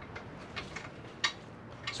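A few faint, light clicks over low background noise, the sharpest about a second in.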